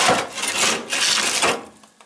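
Rough rubbing and scraping as frozen food packages and the freezer's drawer or shelf are handled, in a few surges that stop about one and a half seconds in.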